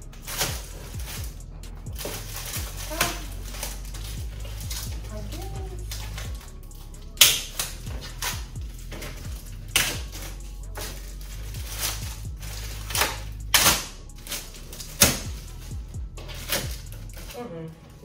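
Plastic wrapping crinkling and being pulled off a folding metal tray table, with sharp clacks and knocks as the metal frame is handled and shifted. The loudest knocks come about a third of the way in, then twice more past the middle.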